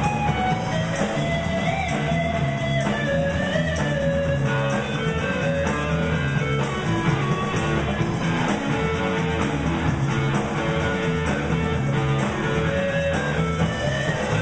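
Live rock band playing an instrumental passage: electric guitar carrying bending melodic lines over bass guitar and a steady drum beat.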